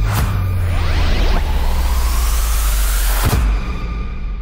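A cinematic logo sting: a rising whoosh sweep over a deep bass drone, ending in a single hit a little over three seconds in, then fading out.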